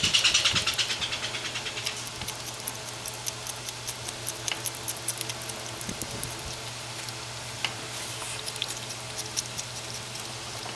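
Spotted skunk shuffling in the dry hay of its carrier: scattered small crackles and clicks over a steady low hum. At the start a fast run of high-pitched pulses, about seven a second, fades out over the first two seconds.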